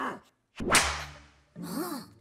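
Cartoon whip-crack swish sound effect: one sharp, loud swish that fades away over most of a second.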